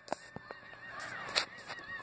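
A small dog whining: a thin, high, wavering tone held through the whole stretch, with a few faint handling clicks.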